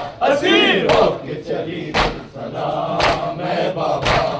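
Men's voices chanting a noha lament together, with sharp chest-beating slaps of matam in time, about one a second.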